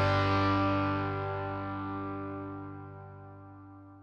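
The final chord of a rock song on distorted electric guitar, left to ring and fading steadily away.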